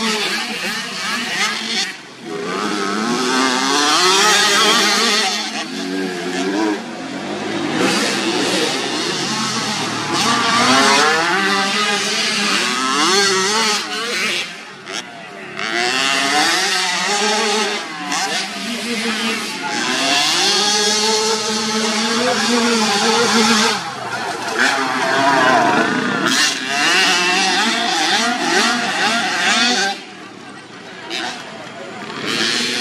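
Small motocross bike engines revving up and down over and over as riders accelerate, shift and back off, the pitch climbing and dropping every second or two, with brief lulls.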